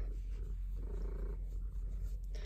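Domestic cat purring steadily, a contented purr while her chin and cheek are being scratched, swelling and easing about once a second.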